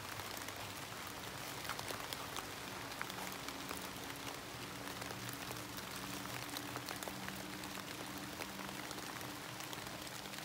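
Light rain falling in woodland: a steady hiss sprinkled with small, scattered drip clicks, over a faint, steady low hum.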